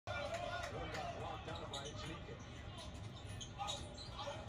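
Basketball game broadcast heard through a TV speaker: a basketball dribbled on the hardwood court, with a commentator's voice over it.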